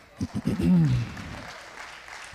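Congregation applauding, an even patter of clapping that builds about half a second in, with a short spoken sound from one voice near the start.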